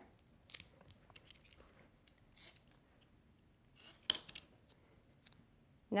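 Scissors cutting strips of duct tape: a few faint snips and rustles of handled tape, with one sharper snip about four seconds in.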